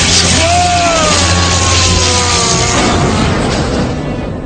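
Cartoon electric-shock effect: a loud, continuous crackling hiss while a man gives a long strained groan that slowly falls in pitch, over dramatic background music.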